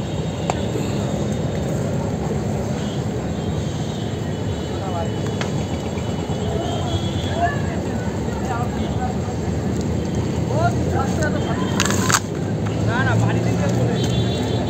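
Steady background rumble of road traffic with faint distant voices, and one short, sharp noise about twelve seconds in.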